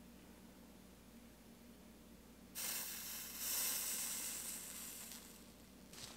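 Flux and molten solder sizzling under the hot tip of a Hakko FX-601 soldering iron as solder is melted onto a stained-glass seam. The sizzle starts suddenly about two and a half seconds in and fades out near the end.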